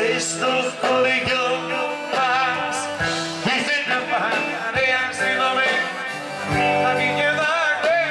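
Live Greek song: a man singing into a microphone over instrumental accompaniment with a steady beat.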